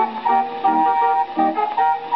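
A Dutch street organ (draaiorgel) playing a bouncy ragtime tune in quick, rhythmic chords, from a circa-1920 Dutch Columbia 78 rpm record played acoustically on a horn gramophone. The sound has no high treble.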